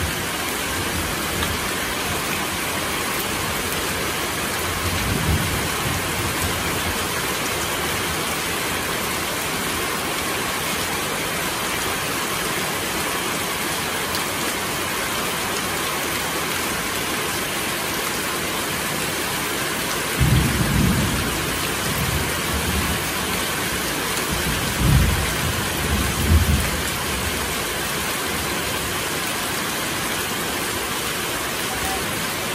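Heavy tropical downpour: a steady, dense hiss of rain falling on leaves, roofing and the ground, with water streaming off the roof edge. A few brief low rumbles stand out, one about two-thirds of the way through and two more near the end.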